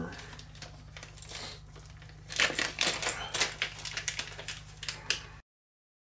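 Small aluminium RC suspension parts clicking and clattering as they are handled and fitted onto a plastic chassis, with a run of quick clicks from about two seconds in. It cuts off suddenly near the end.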